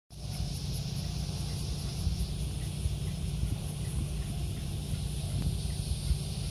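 Steady high-pitched chorus of insects, pulsing faintly and evenly, over a continuous low rumble.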